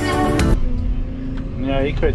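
Background music with a beat cuts off about half a second in. It gives way to the steady hum of a Volvo EC220E excavator's diesel engine, heard from inside the cab. A voice starts talking near the end.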